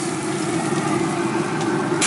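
Steady mechanical hum of a Traeger pellet grill's fan running, even and unchanging.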